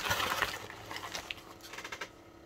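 White plastic packing bag rustling and crinkling as hands handle it inside a cardboard box, with a few light clicks. It is loudest at the start and fades off over the next second or so.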